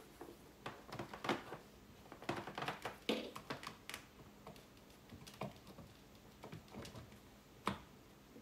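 Scattered light clicks, taps and rustling as a microwave's power cord and plug are handled and pushed into a wall outlet inside a cabinet, with one sharper knock near the end.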